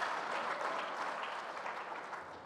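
Audience applause, a dense patter of many hands clapping, gradually dying down.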